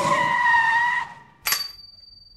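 Cartoon tyre-screech sound effect, a squeal held at one pitch that cuts off about a second in, followed half a second later by a single bright ping that rings and fades.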